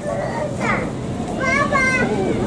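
Children's voices calling out in the background: a short rising call about half a second in and another high call near the end, over a low steady rumble.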